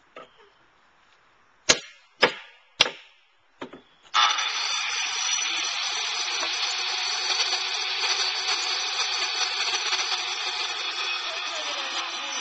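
A few sharp knocks, then a corded circular saw starts about four seconds in and runs steadily with a high whine as it is worked into a wooden board.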